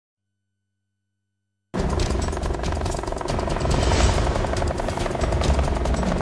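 Silence, then about two seconds in a TV news intro theme starts suddenly: music with a helicopter's rotor chop mixed in as a sound effect.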